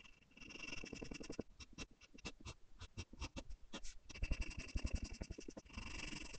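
4B graphite pencil strokes scratching on paper: a string of short, separate strokes that get denser and louder in the second half as the shading speeds up.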